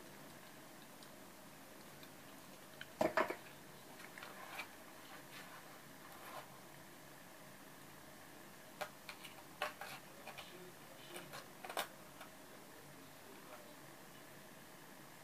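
Thin metal craft chain clinking softly as it is handled and laid along a canvas, in a few scattered light clicks: the loudest about three seconds in, then a cluster of small ones from about nine to twelve seconds.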